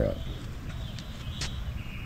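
Quiet outdoor background with a faint, steady high-pitched hum and a single light click about halfway through, after the end of a spoken word at the very start.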